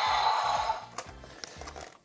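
A T-Rex toy's electronic roar played through its small built-in speaker, set off from the jaw, dying away under a second in. A single click follows about a second in.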